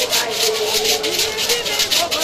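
Gourd rattles shaken in a steady rhythm, about four hissing strokes a second, with a singing voice holding one long note over them.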